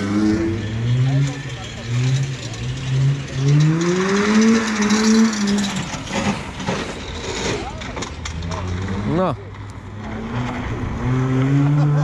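A contest car's engine accelerating hard, its pitch climbing in steps through the gears to a peak about four to five seconds in, then dropping away. A short sharp rev rise and fall comes about nine seconds in.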